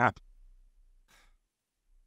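A man's speech breaks off at the start, followed by a near-silent pause with one faint, short breath about a second in.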